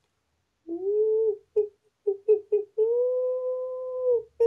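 A man imitating a gibbon's morning call with his voice in high hoots: a rising whoop, a few short hoots, then one long held note, heard over a video call.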